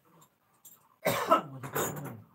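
A person coughing, two bursts about a second in.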